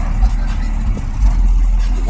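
Steady low rumble with a faint hiss above it.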